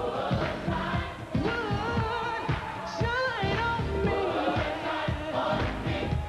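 Gospel choir singing over a band with a steady drum beat; a lead voice sings high, wavering runs in the middle.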